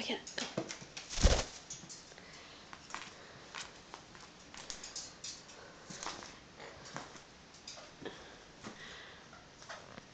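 A caique parrot scuffling and hopping about with a ping pong ball on a fabric-covered surface: scattered light taps and clicks at an irregular pace, with one louder thump about a second in.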